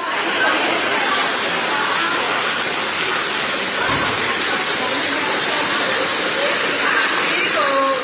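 Steady, loud rush of storm water pouring into the building through the broken plaster ceiling, with no pauses.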